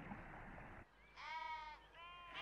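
A sheep bleating: one short call about halfway through, with the start of another bleat at the very end.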